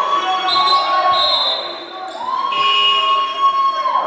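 Voices in a sports hall letting out two long, drawn-out shouts, each about a second and a half, as a reaction to the play, with a basketball bouncing on the court underneath.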